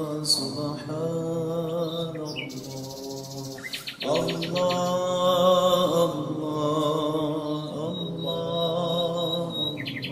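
Zikr chanting: a voice intoning "Allah" in long held notes of about two seconds each, over birdsong. Quick chirping bird trills come just before a short break in the chant about four seconds in, and again near the end.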